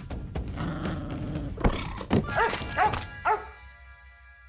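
Cartoon puppy giving three short barks in quick succession over background music, just after a couple of sharp knocks.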